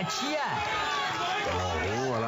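A man talking: the comic dubbed voice-over, in a low voice toward the end.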